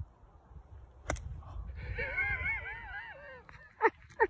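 A golf club strikes the ball with a sharp click about a second in. It is followed by a high, wavering vocal cry that rises and falls several times for over a second, and a short sharp yelp near the end.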